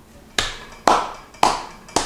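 Four hand claps about half a second apart, each sharp with a brief ring after it.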